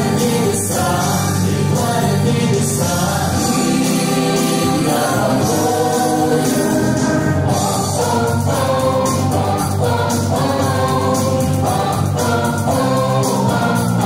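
A mixed vocal ensemble of four women and two men singing in harmony over instrumental rock accompaniment, holding long notes together.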